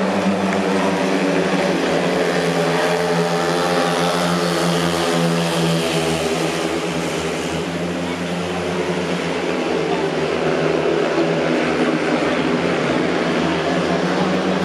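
Several speedway bikes' 500 cc single-cylinder methanol engines running at racing speed as the pack laps the track, a steady loud drone whose pitch bends gently up and down through the laps.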